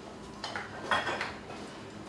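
Kitchen clatter of dishes and metal utensils being handled, with two short bursts of clinking, about half a second in and again around one second in.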